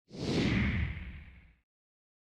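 A whoosh sound effect from a logo intro animation: it swells in quickly and fades away by about a second and a half in.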